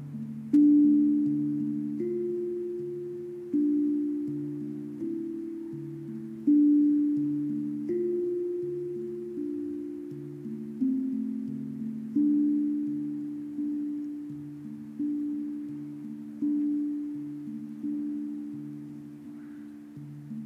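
Low-pitched tuned mallet percussion played slowly: single struck notes about every second and a half, each ringing and fading under the next, in a slow wandering melody.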